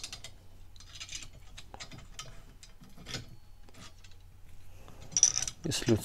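Irregular light clicks and ticks of the Topeak Solo Bike Holder's aluminium hook and bracket parts being handled and screwed together by hand, with a sharper click about five seconds in.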